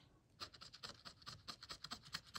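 Metal scratcher tool scraping the coating off a scratch-off lottery ticket in quick, short strokes, faint, starting about half a second in.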